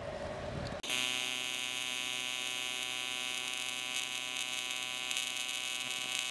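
AC TIG welding arc on aluminum, struck suddenly about a second in and then buzzing steadily, as the arc is restarted at the end of a bead to remelt the crater.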